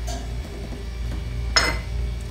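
A single sharp clink of hard kitchenware knocking together, with a brief bright ring, about one and a half seconds in, over a steady low hum.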